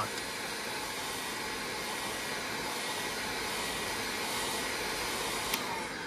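Electric heat gun running steadily, blowing hot air onto a thin pure nickel strip, with one small click near the end.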